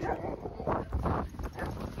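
Several dogs playing and jostling close by, making a few short, soft, breathy play noises and no clear barks.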